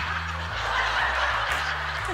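Studio audience laughing in a steady mass of laughter, over a low background music bass line.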